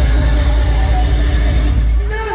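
Loud live trot music played through a concert PA, with a heavy, steady bass.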